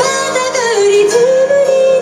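Live band music: a female vocalist sings a line that dips in pitch and then rises into a held note, over acoustic guitar, bass and keyboard accompaniment.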